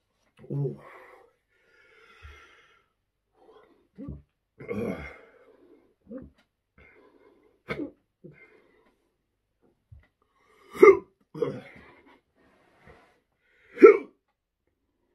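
A man hiccuping again and again, with short breaths and throat noises between; the hiccups are brought on by the chocolate scorpion pepper drink he has just downed. The sharpest, loudest hiccups come about two-thirds of the way through and at the very end.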